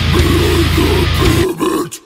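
Brutal death metal band playing down-tuned guitars and drums under low guttural growled vocals. About a second and a half in the band drops out, leaving only the growl, then cuts to a brief gap just before the full band crashes back in.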